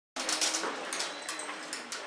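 A dog vocalising as it runs an agility course.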